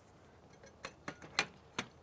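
Four sharp metal clicks and knocks within about a second, the loudest around the middle: the mini dome camera's mounting bar sliding into and seating in the slot of its mast bracket.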